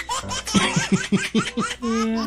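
Baby laughing in a quick run of about seven short rhythmic pulses, starting about half a second in.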